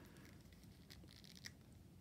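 Near silence, with faint handling noise from a plastic action figure being turned in the fingers: a soft scrape about halfway through and a small tick a little after.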